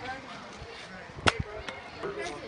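A sharp single knock about a second in, from an egg-drop container hitting the ground, then a lighter click just after, over faint chatter.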